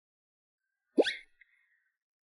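A short comic 'bloop' sound effect, a quick upward pitch glide about a second in, fading briefly after.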